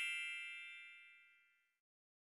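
The ringing tail of a bell-like ding, several steady tones fading away and dying out about a second in, followed by dead silence.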